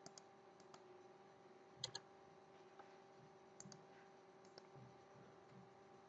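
Faint computer mouse clicks, single and in quick pairs, the loudest a quick double click about two seconds in, over a faint steady hum.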